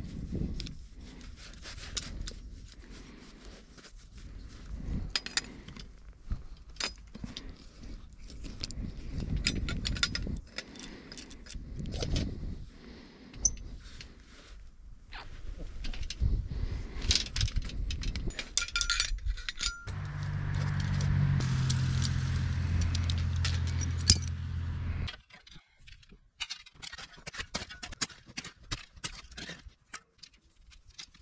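Metal clinks and scrapes of a hand flaring tool as its yoke and cone are fitted onto the clamping bar and screwed down to flare copper tubing. About twenty seconds in, a steady low hum comes in for about five seconds and cuts off suddenly.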